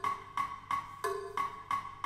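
Wood-block-style metronome clicks keeping an even pulse, about three a second, some at a lower pitch and some at a higher one.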